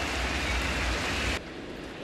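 Ballpark crowd ambience: a steady hum of crowd noise with a low rumble under it, which drops away suddenly about a second and a half in.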